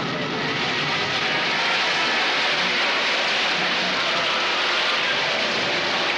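Storm at sea: wind and breaking waves making a steady rushing noise.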